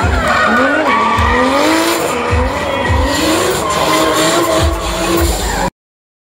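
Drift car's engine revving hard, its pitch rising and falling again and again, over tyre screech as the car slides, with several deep thumps. The sound cuts off suddenly near the end.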